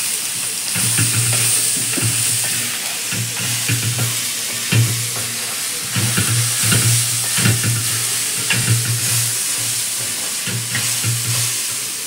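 Squeezed soya chunks sizzling in hot oil and spice masala in a brass pan as they are tipped in and stirred with a spatula, with repeated scrapes of the spatula against the pan.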